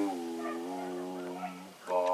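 A deep voice chanting one long, held droning note that sags slightly in pitch and fades out near the end.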